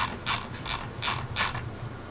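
Computer mouse scroll wheel turned notch by notch, a rapid run of ratcheting clicks at about four to five a second that scrolls a list down the screen.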